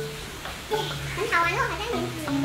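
A child's voice with wavering, sliding pitch, over soft background music of held notes.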